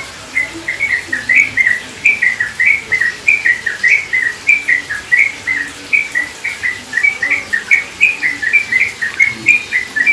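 A small songbird calling over and over in a fast run of short, slurred chirps, about three or four a second.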